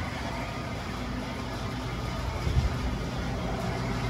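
Steady low machine hum with a droning tone, running through the garage, and a brief low bump about two and a half seconds in.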